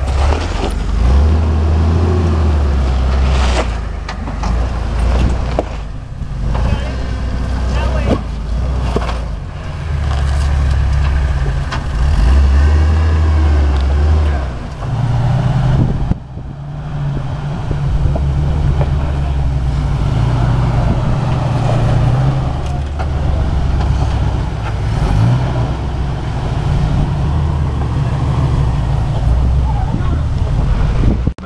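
Jeep engines running at low revs as the Jeeps crawl over rocks, a deep rumble that rises and falls in steps, with scattered knocks.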